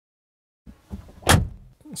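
A moment of dead silence, then faint cabin noise and a single sharp thud a little after a second in.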